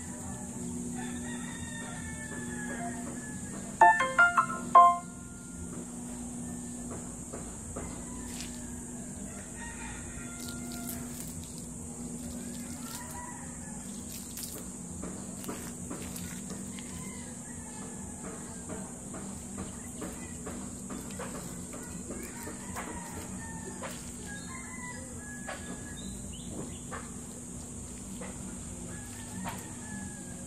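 A rooster crows once, loud and about a second long, roughly four seconds in, over a steady high hiss and faint scattered bird chirps.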